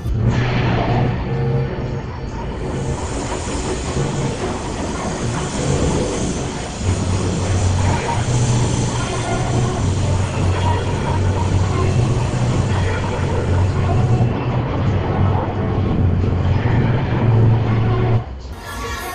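Loud music from a fairground ride's sound system with a heavy, steady bass, over the running noise of a KMG Move It 24 ride as its arm swings the gondolas up. A broad rushing hiss lies over the mix from about two seconds in until a few seconds before the end.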